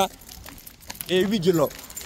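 A man shouts "Hey!" once, about a second in. Faint light clicks are heard between the shouts.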